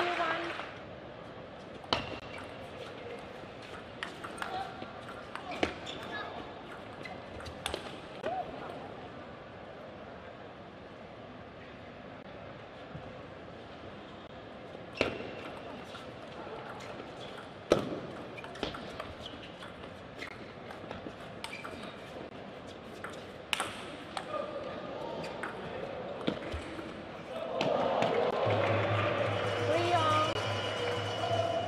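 Table tennis ball hit back and forth in a doubles rally: sharp, irregular clicks of the celluloid ball off rubber-faced bats and the tabletop, with a run of strokes about one a second in the second half, in a large hall. Near the end a louder wash of voices and music rises as the point ends.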